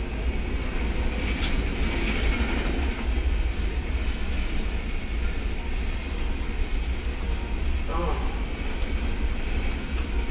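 Steady low rumble with an even hiss of room background noise, and a faint click about one and a half seconds in.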